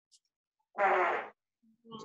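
A single short, buzzy mouth noise, about half a second long, starting a little under a second in, heard through video-call audio that is otherwise cut to silence.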